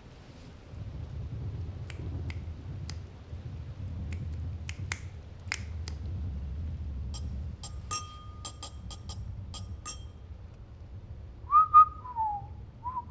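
A man snapping his fingers, a few scattered snaps and then a quick run of them, followed near the end by a short whistled phrase that rises and then falls, the loudest sound.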